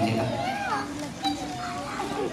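Voices from the audience calling out and chattering, several people at once, some of them high-pitched.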